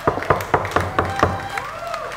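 A quick, uneven run of sharp percussive taps, several a second.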